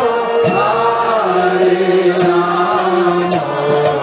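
Kirtan: devotional mantra chanting sung to a sustained, held accompaniment, with sharp strikes every second or two.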